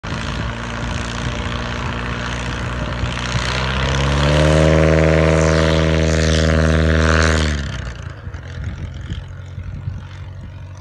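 Cub-type light plane's piston engine and propeller running at full power for takeoff, growing louder as it climbs past close by. Just before eight seconds in the tone drops in pitch and fades sharply as the plane passes.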